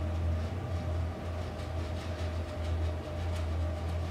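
A steady low hum with a faint hiss over it, with no clear events.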